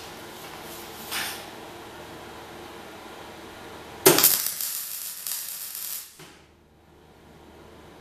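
MIG welder arc striking and crackling for about two seconds as it lays a tack weld of a galvanized steel chain onto a steel trailer drawbar, starting suddenly about halfway through and cutting off abruptly when the trigger is released. The welder judges from how it sounded that it needs a little more current. A brief knock comes about a second in.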